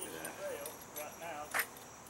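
Men talking, with one sharp click about one and a half seconds in and a faint steady high-pitched tone underneath.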